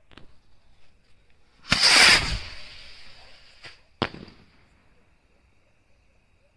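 Big Diwali sky rocket taking off: a faint sputter of the burning fuse, then a sudden loud whoosh at launch, nearly two seconds in, that fades as it climbs, and a sharp bang as it bursts about four seconds in.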